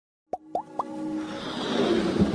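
Intro sound effects for an animated logo: three quick pops, each sliding up in pitch, then a swell of noise that builds steadily louder.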